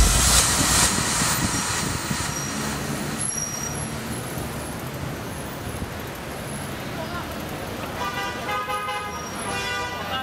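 City street traffic noise at night, with background music fading out over the first two seconds. Near the end comes a brief pitched sound, a car horn or voices.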